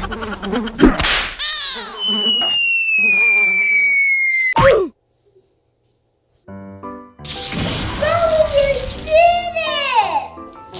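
Edited-in cartoon sound effects. A long whistling tone slides slowly downward and ends in a sharp hit a little before halfway. After a brief silence come more sweeping effects.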